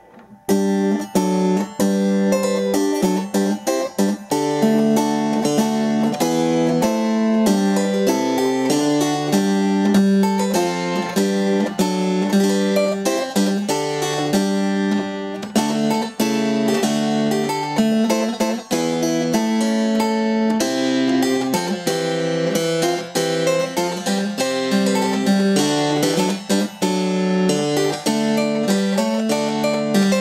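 A virginal, a small harpsichord-family keyboard whose quills pluck the strings, playing a 16th-century piece in quick, continuous runs of plucked notes. The playing starts about half a second in.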